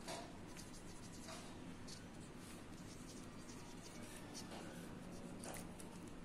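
A black marker writing numbers on paper: faint, short strokes at uneven intervals, with a sharper one right at the start.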